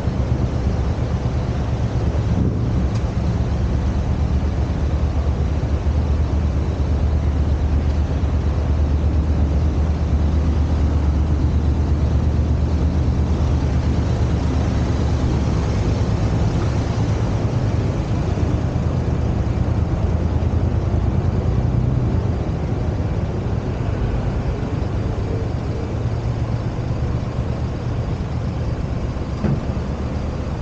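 City street traffic: road vehicles running past on the street beside the footpath, a steady low rumble that is heaviest for the first two-thirds and eases a little after about 22 seconds.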